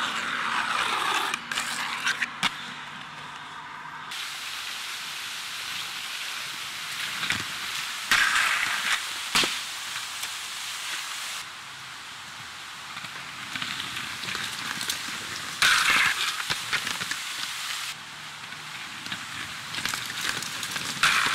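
Aggressive inline skate wheels rolling over rough concrete, a gritty hiss that swells and fades several times, with a few sharp clacks of skates hitting the ground.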